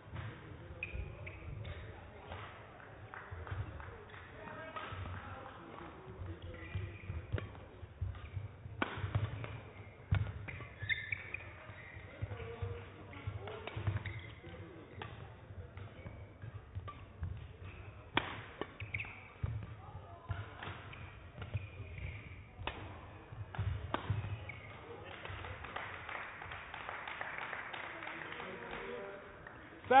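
Badminton rally: sharp cracks of rackets striking the shuttlecock, a second or more apart, over the thuds of players' footfalls on the court.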